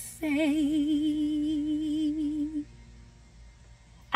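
A woman singing one long held note on the word "I", wavering in pitch, for about two and a half seconds before breaking off. She sings it to test whether her voice does a vocal "run".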